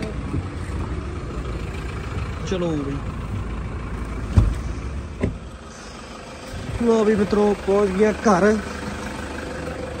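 A car engine idling with a steady low rumble that fades after about five seconds. A single loud thump comes about four and a half seconds in, followed by a lighter knock. Voices are heard near the end.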